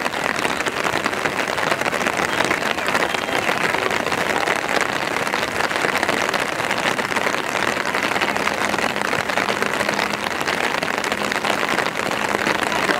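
Steady rain falling, an even pattering hiss that keeps the same level throughout.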